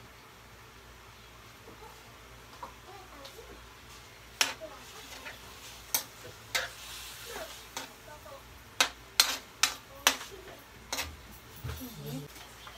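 A metal ladle stirring pork in a stainless steel wok, knocking and scraping against the pan in a string of sharp clinks from about four seconds in, over a simmering sauce.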